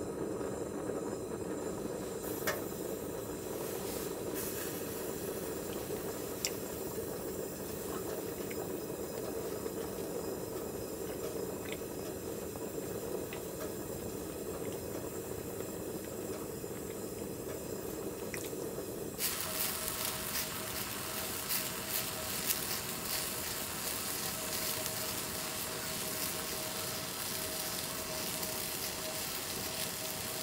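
Cassette gas stove burner hissing steadily under a small cup of water as it heats. About two-thirds through the sound turns to a brighter hiss with fine crackling ticks and a faint steady whine, the water beginning to heat toward a simmer.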